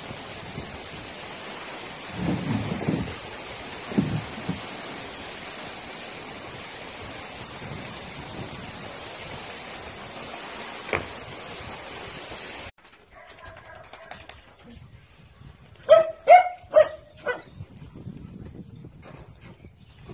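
Heavy rain pouring down on a muddy yard, with low rumbles of thunder about two and four seconds in. The rain noise cuts off suddenly about two-thirds of the way through. Near the end a dog gives several short calls in quick succession.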